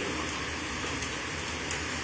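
Steady, even hiss of room tone with a faint low hum underneath; no distinct event.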